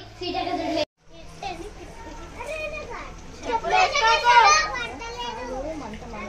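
Children's voices talking and calling out over one another, after a brief silent break about a second in.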